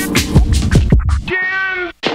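Lo-fi boom-bap hip-hop beat with drums and bass that cuts out about two-thirds of the way through. A short, wavering pitched sound that rises and falls follows as the track ends.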